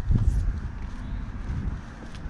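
Wind buffeting the microphone, a low rumble, with a soft thump about a quarter second in as the camera swings.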